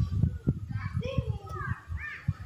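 Children's voices calling out and playing in the background, with short high, rising and falling calls about halfway through and near the end, over an irregular low rumbling.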